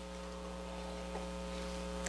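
Steady electrical mains hum with a stack of fixed overtones, low in level, and a single faint click a little after a second in.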